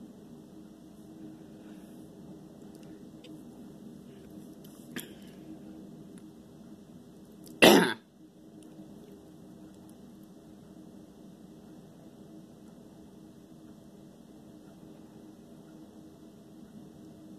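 A person coughs once, short and loud, about halfway through, over a steady low hum. A faint click comes a few seconds before the cough.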